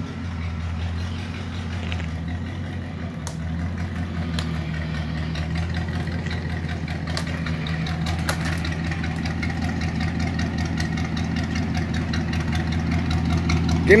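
1986 Ford Thunderbird idling steadily through a straight-piped dual exhaust, the catalytic converter removed and the pipes ending in side-exit turndowns.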